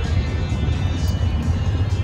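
Steady low road rumble inside a moving car's cabin, with music playing over it.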